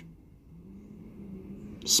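Low steady hum inside a car cabin, with no clear event over it; a spoken word begins right at the end.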